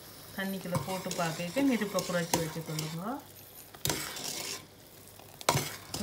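Sugar syrup bubbling at the boil in a stainless steel saucepan while a metal spoon stirs it, scraping round the pan, with a couple of sharp knocks of the spoon against the pan in the second half. A voice is heard in the background during the first half.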